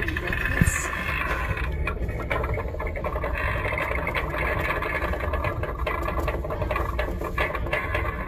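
Sound effects playing from a light-up Haunted Mansion Halloween decoration: a steady low rumble with an indistinct voice-like sound over it.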